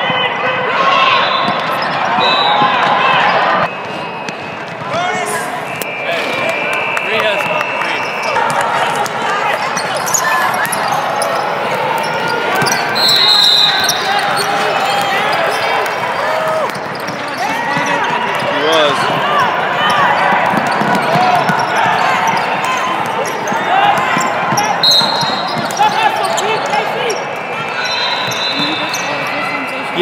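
Basketball game in play in a large gym: a ball dribbling and bouncing on the hardwood floor amid the voices of players and spectators, with a few short high-pitched tones.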